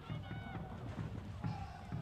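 Football-pitch ambience: a steady low rumble with irregular low thuds, and a faint high voice calling out early on.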